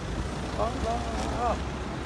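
A car engine idling close by, a low steady rumble, with a voice speaking over it.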